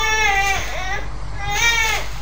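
A high-pitched voice crying in two drawn-out, wavering cries, the second about one and a half seconds in, much quieter than the preaching around it.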